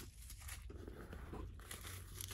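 Faint rustling and crinkling of packing paper being pulled out of the inside of a new handbag.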